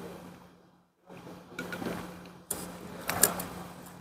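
Faint small handling noises with a sharp click about two and a half seconds in, over a low steady hum. The sound drops almost to nothing about a second in.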